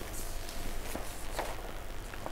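Low room ambience with a few faint, soft knocks or rustles, the clearest about a second and a second and a half in.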